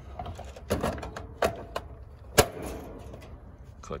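Hyper soft-start module being handled and snapped onto its mounting bracket inside a heat pump's control panel: a few light plastic knocks, then one sharp, loud click about two and a half seconds in as it clicks into place.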